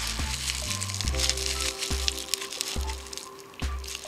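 Bubble wrap and plastic crinkling and rustling as hands unwrap small wrapped parts, over background music with a stepping bass line.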